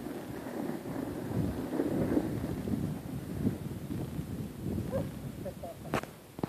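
Snow shovel blade scraping steadily over packed snow and ice as it is dragged along carrying two small children. Footsteps crunch alongside it.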